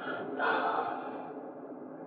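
A man's soft exhale picked up close on a clip-on microphone, starting about half a second in and lasting about a second, over a low steady hiss.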